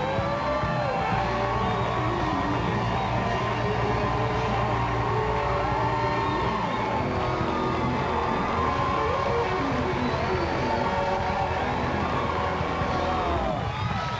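A live house band plays a talk show's opening theme music while the studio audience cheers and whoops. The level eases off right at the end.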